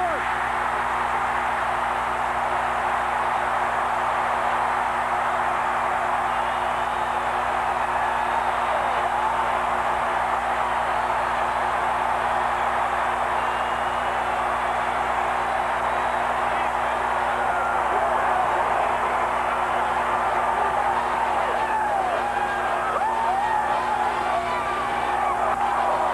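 Large stadium crowd cheering and yelling without a break, with scattered whoops near the end: the home crowd celebrating a missed game-winning field goal that seals the home team's win.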